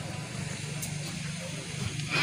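A steady low engine hum, like an idling motor, with faint background voices.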